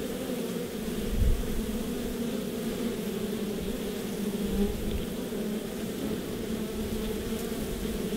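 Many honey bees buzzing steadily at a hive entrance: a continuous low hum with a higher overtone. A brief low rumble comes about a second in.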